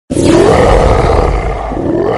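A loud tiger-roar sound effect that starts abruptly and swells again near the end.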